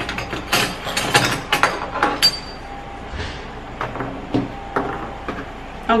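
A small kitchen knife and garlic cloves being handled on a plastic cutting board while the cloves are peeled: a quick run of clicks and taps in the first two seconds, then a few scattered taps.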